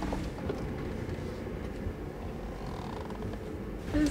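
Steady low rumble of a 4x4 driving along a dirt track, heard from inside the cabin.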